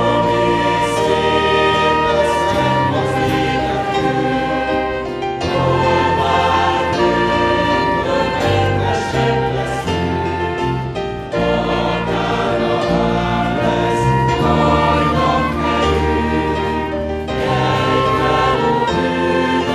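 A church congregation singing a hymn together, led by a worship band with singers and acoustic guitar.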